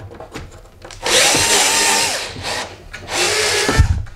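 Bosch cordless drill run in two short spins, about a second in and again near three seconds, its twist bit turning through holes in a plywood end cap to mark the wood behind them. Each spin has a motor whine that rises and falls, and a knock comes as the second spin ends.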